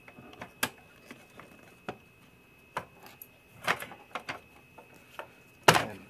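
Scattered plastic clicks and knocks as the blower housing cover of a Sanitaire commercial upright vacuum is worked loose by hand, with the loudest knock near the end as the cover comes free of the fan.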